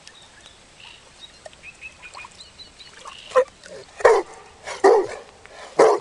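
A dog barking four times, short barks about a second apart, starting about halfway through. The barks are its answer to a spoken counting question, 'seven minus four'.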